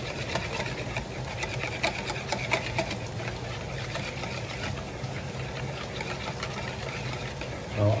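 Wire whisk beating a thin egg and coconut-cream mixture in a plastic bowl: a quick, continuous run of light clicks from the wires striking the bowl, with the swish and slosh of the liquid.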